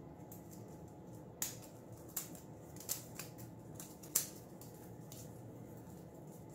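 Folded magazine-paper strips rustling and crackling as they are hand-woven through the paper uprights of a basket, with about four short sharp crackles, the sharpest about four seconds in.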